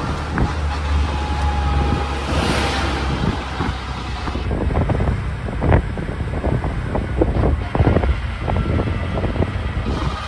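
Road noise and wind buffeting the microphone from inside a moving vehicle, with a steady low rumble. From about halfway there are many short knocks and rattles.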